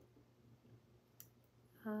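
Near-silent room tone with a steady low hum, broken once by a single short click a little past the middle; a woman starts speaking at the very end.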